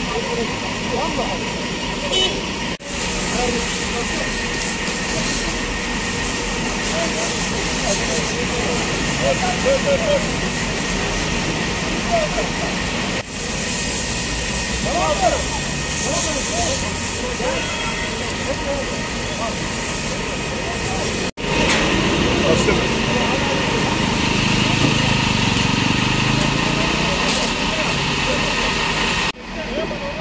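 Steady loud hiss of firefighters' hose water spraying onto a smoking bus, with people talking in the background. The sound drops out suddenly and briefly three or four times.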